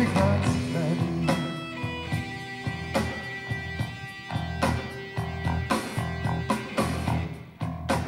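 Live rock band playing an instrumental passage with no singing: electric guitars, bass guitar and drums, the level dipping briefly just before the end.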